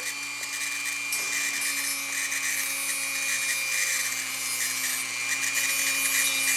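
Dremel rotary tool with a conical grinding stone running steadily as it grinds down a great horned owl's talon.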